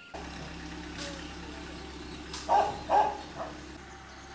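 Small vehicle engine idling steadily. Two short loud calls break in about two and a half and three seconds in.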